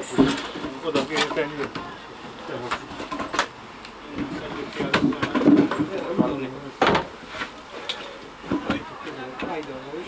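Heavy wooden mine timbers knocking and thudding as they are handled and laid in place, with several sharp knocks, the loudest about seven seconds in, under low voices of the work crew.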